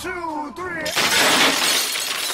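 A slowed-down, falling voice from the dance music, then about a second in a loud glass-shattering crash sound effect that fades away.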